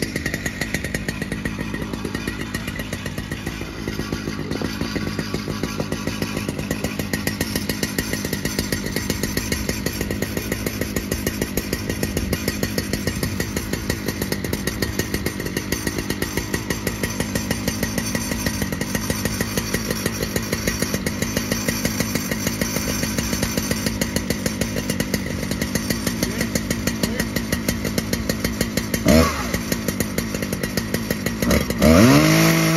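Husqvarna 3120 two-stroke chainsaw mounted on a Granberg Alaskan mill, running steadily, with a short rise in pitch and level near the end.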